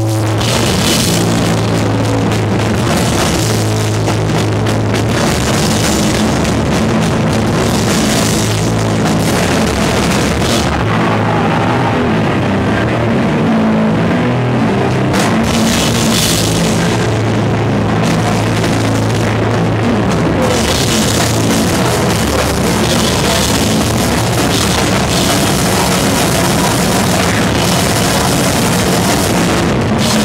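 Powerviolence band playing live: electric guitar and a drum kit with cymbals, loud and continuous, heard from right beside the drums.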